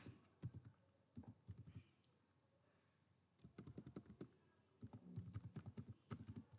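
Faint typing on a computer keyboard: a few scattered keystrokes in the first two seconds, a pause, then quicker runs of keys through the last two and a half seconds.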